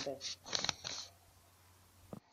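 Dry sand poured and spread by hand over potatoes in a basket: a few short rustling hisses in the first second.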